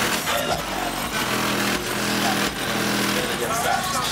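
Hip-hop playing loud through a car's trunk-mounted sound system: heavy bass notes under a rapping voice.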